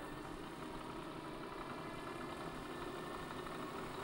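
Safir-5 turbojet's electric starter motor spinning the engine's compressor shaft at a steady speed, a faint even hum. The starter is engaged and under load, drawing about 63 amps through a PWM speed controller.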